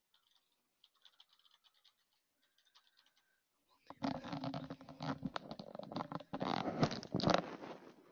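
Faint scattered clicks, then about four seconds in loud scratching and rubbing right on a microphone as it is handled. The scratching is peppered with sharp knocks and stops just before the end.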